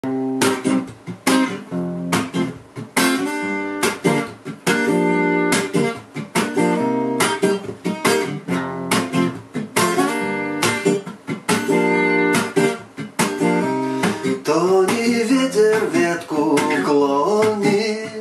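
Steel-string acoustic guitar playing short, choppy strummed chords in a steady reggae rhythm. Near the end a wordless voice with a wavering pitch joins over the chords.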